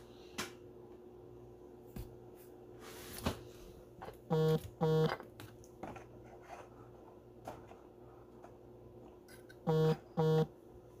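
Two pairs of short, identical electronic notification tones, one pair about halfway through and another at the very end, the alerts coming in fast enough to be called 'blowing up'. Faint clicks of plastic card holders being handled sound in between.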